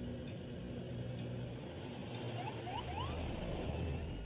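Vehicle engine idling with a steady low hum over background noise, with three short rising chirps in quick succession a little past halfway.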